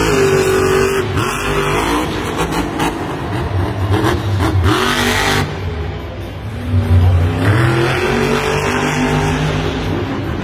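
Grave Digger monster truck's supercharged V8 engine revving hard, the pitch climbing and falling again and again as the truck drives across the dirt. The level dips briefly about six seconds in, then the engine revs up again.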